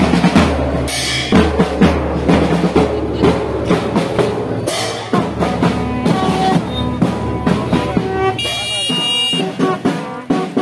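Marching band bass drums and side drums beating a loud, steady marching rhythm.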